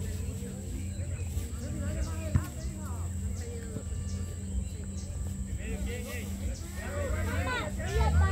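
Voices of players and onlookers calling out across an open football pitch, faint at first and louder near the end, over a steady low hum. A single sharp knock sounds about two and a half seconds in.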